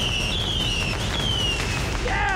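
Fireworks going off: several overlapping high whistles, each falling slowly in pitch, over a scatter of sharp crackling pops.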